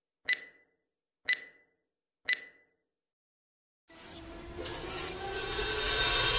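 Countdown-timer beeps from an intro animation: three short high beeps, one a second, each dying away quickly. After a second of silence, a logo-reveal sound effect sets in near the end, a noisy whooshing swell with steady tones that keeps growing louder.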